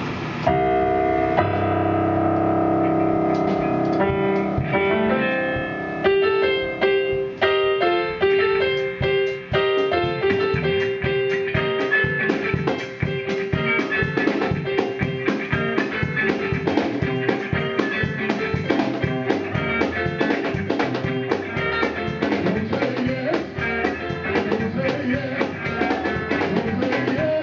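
Live gospel band playing an instrumental passage. An electric keyboard holds sustained chords at first; from about six seconds in a steady beat starts, with electric guitar and drum kit playing along.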